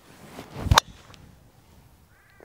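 Driver swung through with a short rising whoosh, ending about three-quarters of a second in with one sharp crack as the clubhead strikes a Polara golf ball off the tee.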